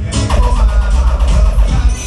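Recorded music with a heavy bass line played loud through a Jamaican sound system.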